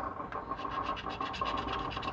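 A coin scratching the latex coating off a scratch-off lottery ticket: a steady run of quick, short rasping strokes.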